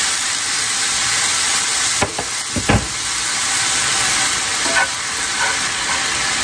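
Hot pasta water sizzling in a skillet of spaghetti, a steady hiss, while metal tongs toss the pasta and knock against the pan a few times a couple of seconds in.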